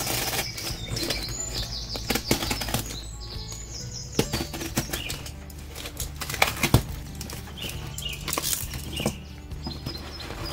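A snap-off utility knife slitting a cardboard box, with the cardboard scraping, tearing and rustling in many short, irregular bursts as the flaps are cut and pulled open.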